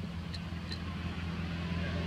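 A motor vehicle's engine running steadily off-screen, a low hum that grows slowly louder.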